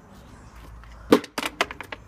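A hard object hitting concrete paving slabs with a sharp clack about a second in, then clattering with a quick run of smaller knocks: a failed landing.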